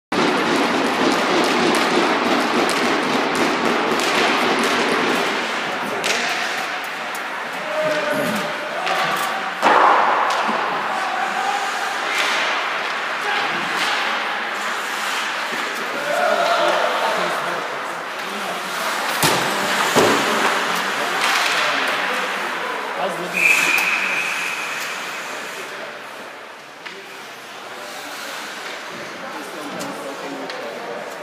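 Ice hockey game heard from rink-side in an arena: sticks and puck clattering, skates on the ice, and sharp thuds of the puck and players hitting the boards, loudest about ten and twenty seconds in, under indistinct shouting from players and spectators. A short, steady referee's whistle blows about 23 seconds in.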